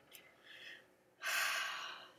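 A person's sharp, breathy intake of air close to the microphone, starting about a second in and lasting under a second, after a few faint small noises.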